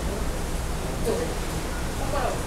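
Steady wind and sea noise on a ship's open deck, with a low rumble of wind on the microphone. A brief snatch of a voice comes about a second in.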